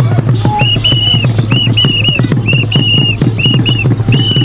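Fast, steady drumbeat for a dance, with a whistle blown over it in short blasts grouped in quick twos and threes from under a second in.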